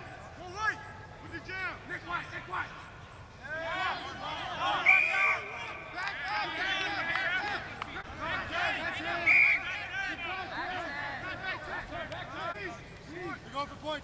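Several voices of players and onlookers shouting and calling over one another during rugby play. Two short blasts of the referee's whistle cut through, a longer one about five seconds in and a shorter one about four seconds later.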